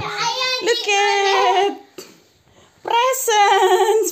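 A young child singing in a high voice, two phrases with a pause of about a second between them.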